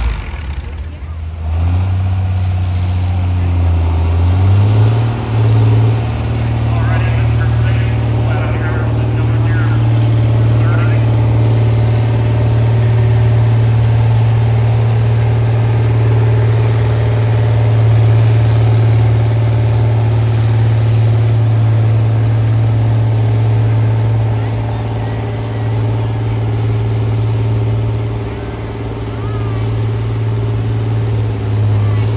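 John Deere diesel farm tractor pulling a weight-transfer sled at a tractor pull. The engine climbs in pitch over the first few seconds as it comes up under load, then runs hard and steady, dipping slightly near the end.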